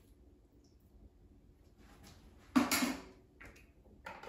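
A sudden clatter of kitchen items about two and a half seconds in, fading within half a second, followed by a smaller knock, as the oil bottle and measuring cup are handled over the mixing bowl and counter.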